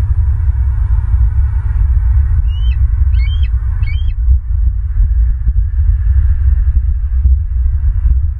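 Steady low rumbling of wind buffeting an outdoor camera microphone. About two and a half seconds in come three short, high chirping bird calls in quick succession, each with a sharp rise and fall in pitch.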